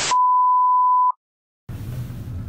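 Colour-bars test tone: a single steady, high, pure beep that starts with a short click, lasts about a second and cuts off suddenly into dead silence. Faint room noise comes back near the end.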